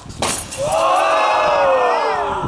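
A fluorescent light tube shatters with a sharp crash as it is smashed over a wrestler. A long yell follows, slowly falling in pitch.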